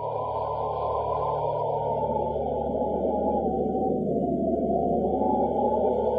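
Eerie soundtrack drone: a wind-like moaning whoosh that sinks in pitch about four seconds in and then rises again, over a steady low hum, growing gradually louder.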